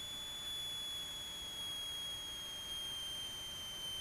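A steady high-pitched electrical whine over a faint hiss, drifting slightly lower in pitch, as heard on a light aircraft's cockpit intercom recording.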